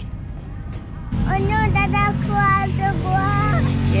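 Kart engines running out on the track: a steady low drone that starts about a second in. A young child's voice rises over it in high, drawn-out sing-song notes for a couple of seconds.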